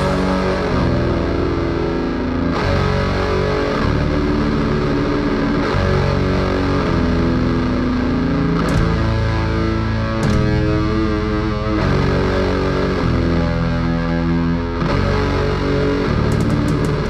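Atmospheric black metal: heavily distorted electric guitars playing sustained chords that change every second or two, loud and dense throughout.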